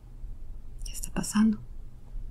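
Brief whispered speech about a second in, hissy and breathy, ending in a short voiced 'uh'.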